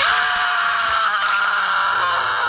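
A man's long, loud scream of pain, held without a break, from being stabbed with a wooden stake.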